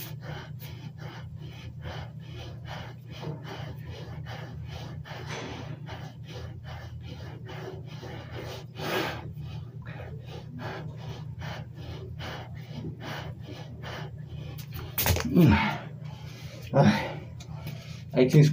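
A man breathing hard, panting and gasping, through a set of push-ups, over a steady low hum. Near the end come two louder, grunting breaths.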